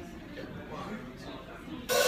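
Quiet voices talking in a room, then a live band of drums, bass and guitar comes in loudly near the end.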